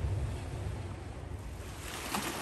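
Sea surf washing on a rocky shore, with wind rumbling on the microphone; the hiss of the surf grows brighter near the end.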